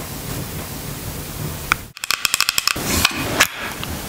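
A steady hiss. About halfway through it breaks off, and long acrylic nails start tapping on a pink plastic highlighter compact: a fast run of sharp taps, then slower scattered ones.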